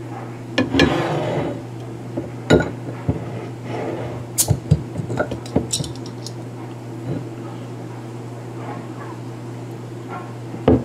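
Glass soda bottle opened with a metal bottle opener: the cap is pried off about a second in, followed by a few sharp clinks of metal and glass. A steady low hum runs underneath.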